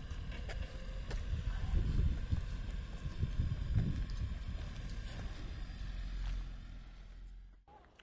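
Low rumble and irregular knocks from a Yangwang U8 electric SUV crawling over off-road course obstacles under hill descent control, heard inside the cabin with no engine note. The sound fades out near the end.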